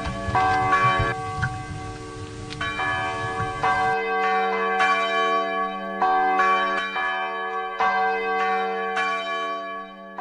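Church bells ringing, struck about twice a second, their tones overlapping and sustaining. A low background layer under the bells stops abruptly about four seconds in.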